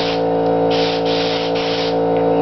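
Paasche Talon airbrush spraying paint in short on-off bursts of air hiss, about four bursts in two seconds.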